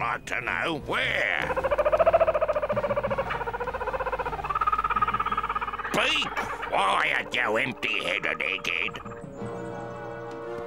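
Cartoon kookaburra laughing: a long, pitched, rapidly rippling cackle of about four seconds, followed by a wombat character's grumbling voice. Music comes in near the end.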